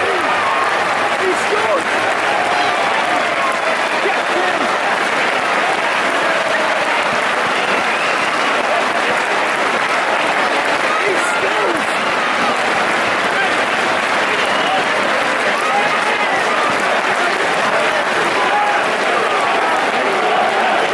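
Stadium football crowd cheering, shouting and applauding steadily, a dense wash of many voices after a home goal.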